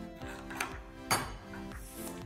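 Background music with a steady beat, about two beats a second, over a metal spoon stirring stiff play dough in a glass bowl.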